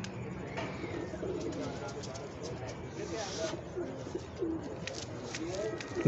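Domestic pigeons cooing softly, with light clicks and faint murmured voices in the background.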